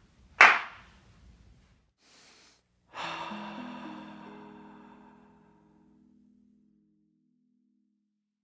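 A single hand clap about half a second in, dying away quickly in a conference room treated with acoustic panels. About three seconds in comes a short musical sting: a bright shimmer over a low chord whose notes come in one after another and fade out over about three seconds.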